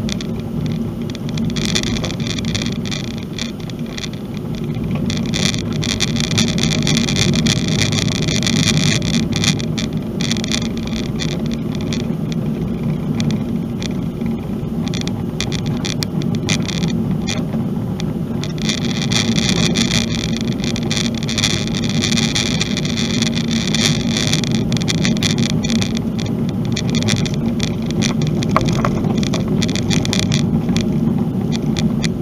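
A car driving along a dirt road mixed with a little asphalt, with a steady low road rumble and the rattly hiss of tyres on the loose surface. The tyre noise grows louder in two stretches, about five seconds in and again near the twenty-second mark.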